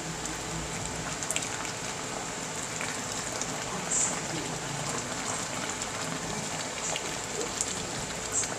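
Coconut-milk fish stew simmering in a frying pan, a steady bubbling hiss, with a few light clicks of a spatula against the pan as the sauce is spooned over.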